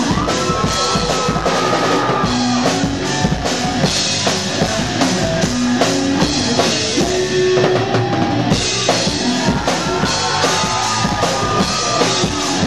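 Rock band playing live and loud: electric guitars over a driving drum kit with steady bass-drum and snare hits, with held high notes near the start and again near the end.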